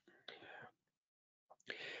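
Near silence broken by two faint, breathy sounds from the speaker: one about a third of a second in and one just before the end, as he draws breath to speak again.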